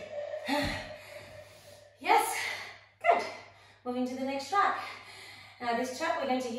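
A woman catching her breath after a hard core exercise: breathy gasps and exhales about two and three seconds in, then short voiced sounds from about four seconds on.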